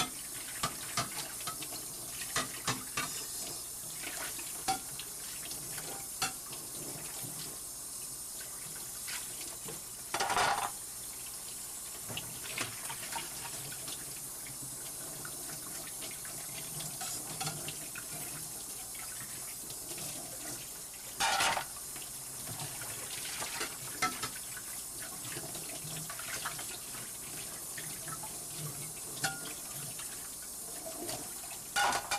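Water running from a kitchen tap into a sink while dishes are washed, with small clicks of handling throughout. Two brief louder bursts come about a third and two-thirds of the way through.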